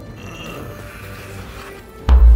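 Background music at a moderate level.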